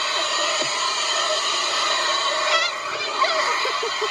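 Vacuum cleaner running steadily, its hose drawing air as it is worked over a car seat.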